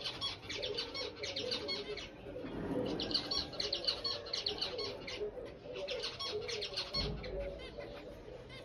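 Caged zebra finches calling in quick chattering runs of short high notes, busiest from about three seconds in and again near six seconds, with a dull thump near the end.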